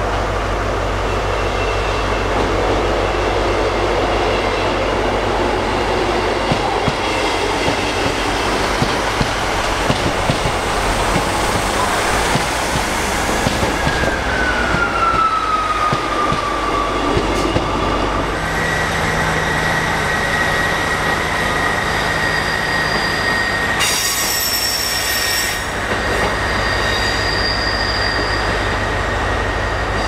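A Sprinter diesel multiple unit running slowly into a platform. Its engine hums steadily and its wheels click over the rail joints. A squeal glides down in pitch around the middle, then a steady high squeal holds as the train slows, with a brief burst of higher tones near the end.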